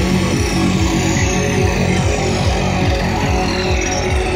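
Electronic dance music from a DJ set, played loud over a sound system, with a steady repeating bass beat.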